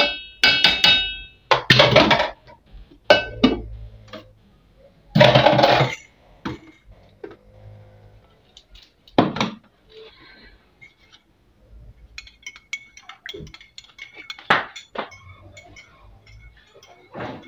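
Stainless-steel kitchenware clinking and clanking: a metal mesh strainer and a pot lid knocked against a steel pot. There are several loud clanks, some ringing, in the first six seconds, then lighter, quicker clinks later on.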